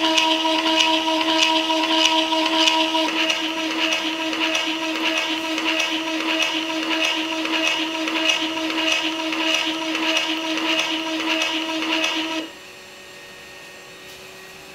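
Small motor of a 3D-printed peristaltic pump running, with a steady whine and a regular ticking as its three bearing rollers turn against the silicone tube. It stops about twelve seconds in, leaving only a faint hum.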